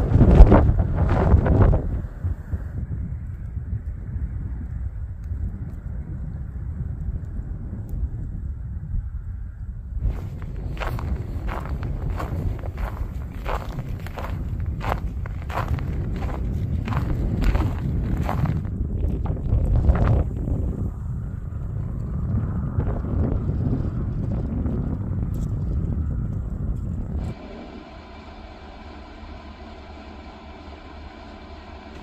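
Wind buffeting the microphone, with loud gusts in the first two seconds and then a steady rush. Footsteps on snow at an even walking pace, about one and a half a second, for some ten seconds. Near the end, a quieter steady hum from the electric space heater running inside the camper.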